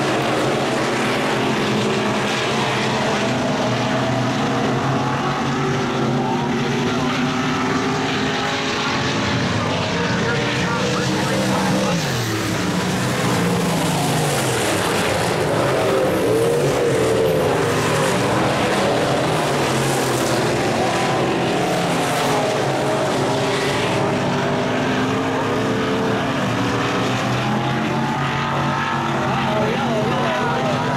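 Dirt-track stock car V8 engines racing close together, the engine note rising and falling as the cars lap the oval, dropping as they back off into the turns.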